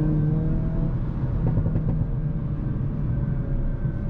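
Hyundai Kona N's 2.0-litre turbocharged four-cylinder engine and road noise heard inside the cabin while driving at speed. The engine note rises gently in the first second, then holds steady.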